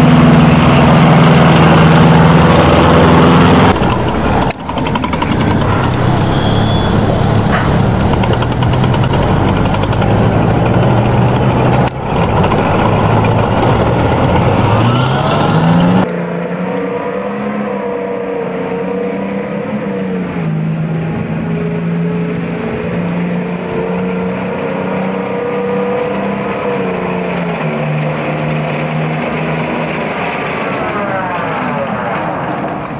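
Tracked armoured vehicles running on a road: first an M4 Sherman tank driving by with a loud, steady engine note that rises in pitch as it revs just before a cut, then a smaller tracked armoured vehicle's engine, quieter, its pitch wavering as it approaches.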